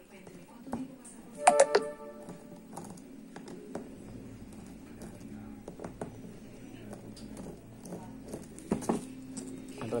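Screwdriver working the small screws of a brushcutter's diaphragm carburetor: scattered light metallic clicks and taps from the tool and the carburetor body being handled. A short, loud pitched sound comes about a second and a half in.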